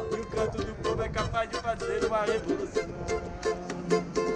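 A small ukulele-sized acoustic string instrument being strummed in a steady rhythm, chords ringing between the strokes.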